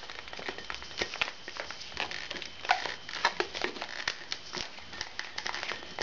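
Inflated latex modelling balloon being handled and twisted, giving short irregular rubs, crinkles and squeaks of the rubber.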